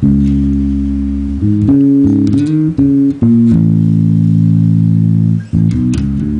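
1995 Alembic Essence four-string electric bass with active pickups, played amplified: a long held note, a few changing notes with slides, another long held note, then a quick run of notes near the end.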